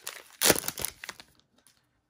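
Plastic wrapper of an Upper Deck hockey card pack crinkling and tearing as it is pulled open and the cards are slid out, with the loudest rip about half a second in and the crackling dying away after about a second.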